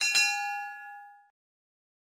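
Notification-bell 'ding' sound effect from a subscribe-button animation: one bright bell strike with a short click just after it, ringing out and fading away within about a second and a half.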